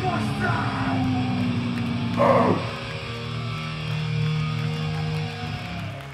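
Hardcore punk band playing live: distorted electric guitars holding chords, with a sharp loud hit about two seconds in, after which long held notes ring on and fade as the song ends.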